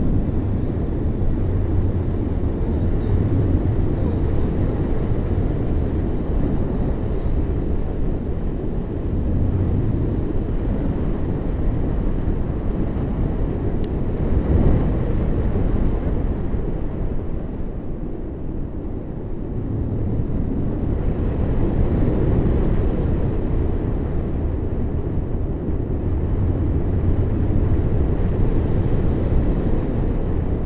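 Wind rushing over the microphone of a camera on a tandem paraglider in flight: a loud, low, buffeting rush of air that eases a little about two-thirds of the way through.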